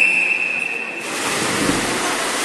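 A race start signal at a swimming meet: one steady high tone lasting about a second. It is followed by a rush of splashing as the swimmers dive off the blocks into the pool.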